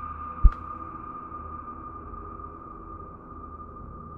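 A steady high-pitched drone, with one sharp low thump about half a second in.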